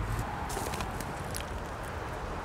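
Steady outdoor background noise with a few faint, light taps, about half a second and about a second and a half in.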